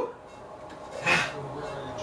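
A person's single short, forceful breath out about a second in, followed by a low voiced hum.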